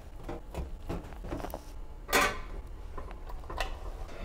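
A metal baking sheet being handled and set into an oven: scattered light knocks and clicks, with one louder metal scrape about two seconds in.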